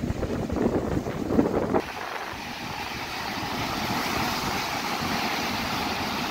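Wind buffeting the microphone over storm surf for the first couple of seconds, then, after an abrupt cut, a steady roar of heavy cyclone-driven waves breaking on the shore.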